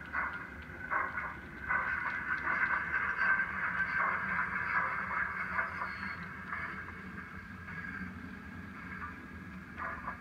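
OO gauge model steam locomotive running slowly, its DCC sound decoder playing steam exhaust chuffs through the model's small onboard speaker. The chuffs are separate at first, run together more densely from about two to six seconds in, then grow quieter toward the end.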